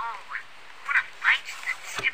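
A high-pitched, pitched-up cartoon character voice making five short squeaky syllables, too garbled to be words.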